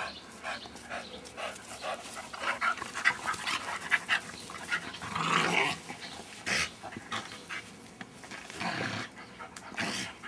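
Two young dogs play-fighting: breathing hard, with scuffling and short irregular noises throughout. The longest and loudest sound comes about halfway through.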